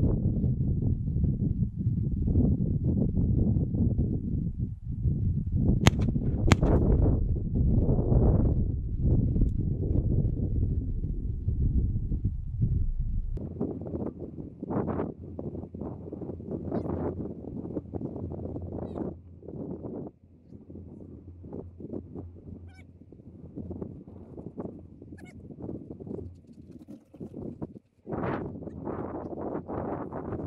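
Wind buffeting the microphone, heavy for the first dozen seconds and then easing, with two sharp cracks about six seconds in.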